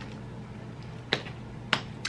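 Two sharp hand snaps about half a second apart, over quiet room tone.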